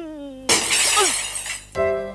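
A man's drawn-out exclamation trails off, then a loud crash like shattering glass hits about half a second in and lasts about a second. Light keyboard music starts near the end.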